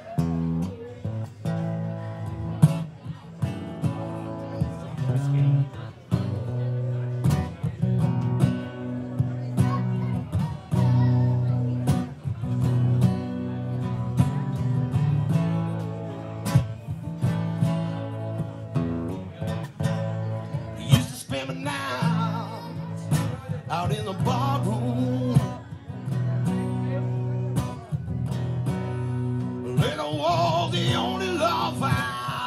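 Two acoustic guitars strumming chords together, starting suddenly at the top of a song. A man's voice comes in over the guitars about two-thirds of the way through.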